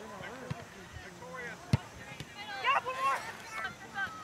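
A soccer ball kicked once, a single sharp thud a little under two seconds in, amid distant shouting from players and sideline.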